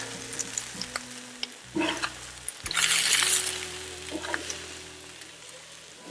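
Chicken breasts sizzling on a hot Blackstone flat-top griddle as they are flipped with a metal spatula, with a louder burst of sizzle about three seconds in.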